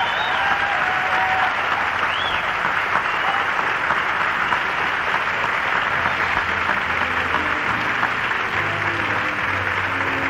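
Live theatre audience applauding and cheering after a musical number ends, with a couple of whistles in the first seconds. About six seconds in, the orchestra starts playing softly under the applause.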